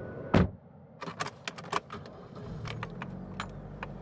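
A car door slams shut, then keys jangle and click, and a car engine starts and runs at a low, steady idle, as the taxi gets under way.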